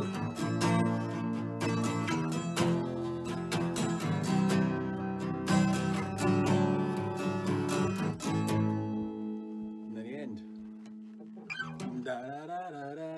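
Acoustic guitar being strummed, a run of chords for about eight seconds, after which the last chord is left ringing and fading away.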